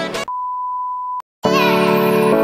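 Background music stops, then a single steady high beep tone holds for about a second, cuts off into a moment of silence, and new keyboard music begins.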